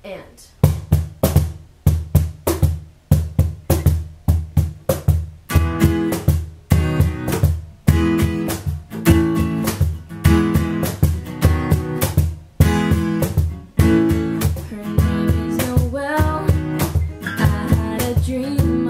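Steel-string Taylor acoustic guitar strumming a song intro in a steady rhythm, with a cajón keeping the beat. The strums are short and choppy at first, then open into fuller ringing chords about five seconds in.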